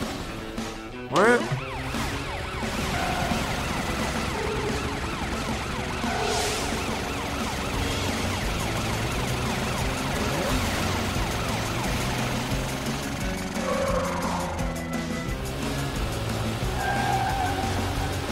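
Cartoon emergency-vehicle sirens wailing over background chase music. A short, louder burst comes about a second in.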